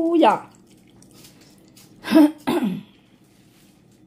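A young child's voice: a short vocal sound right at the start, then two brief, louder vocal sounds about two seconds in, with a quiet room between them.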